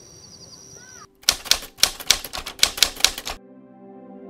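Typewriter keys clacking in a quick run of about a dozen strikes over two seconds, a sound effect for text being typed onto the screen. Before it there is a steady high-pitched outdoor buzz with chirps, and soft ambient music begins near the end.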